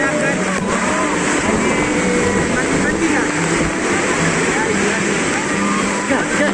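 Loud, steady rush of a waterfall pouring into its plunge pool, heard close up from inside the pool, with voices over it.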